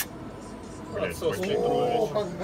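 A brief sharp click, then about a second in a man's voice exclaiming without clear words and ending in a drawn-out held vowel.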